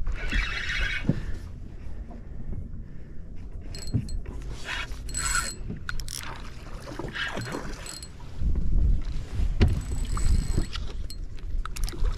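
Wind buffeting the microphone and water lapping, with scattered small clicks and rattles from a spinning reel being worked while fighting a hooked redfish. The wind grows much stronger for the last few seconds.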